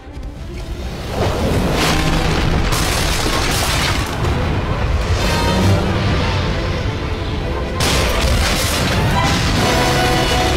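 Deep booms and surging crashes of battle sound effects over a dramatic orchestral score, with large swells about a second in and again near the end.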